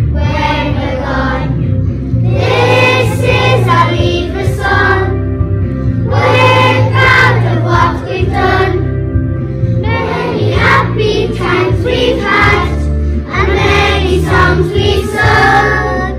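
A group of young children singing a song together in phrases, over a musical backing track with a steady bass line.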